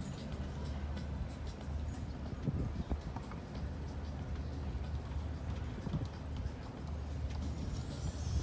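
A dressage horse's hoofbeats on the arena footing, over a steady low hum.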